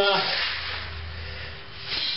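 Dry rustling hiss of malted grain being scooped and poured into a hand grain mill's hopper. It is loudest at the start and fades.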